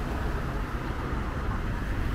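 Road traffic on a city street: a steady rumble of vehicles running along the road.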